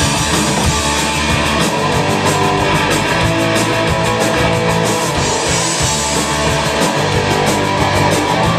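Live punk rock band playing loud: electric guitar, bass guitar and drum kit, with fast, even cymbal strokes over a moving bass line.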